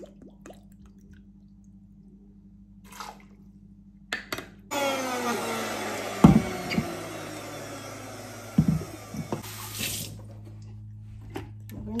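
Water pouring steadily for about five seconds, starting suddenly a little before the middle, with a couple of clunks against the container.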